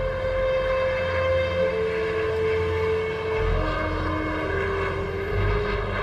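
Low rumble of a jet airliner on landing approach, swelling and easing. Sustained low musical notes change pitch every second or two over it.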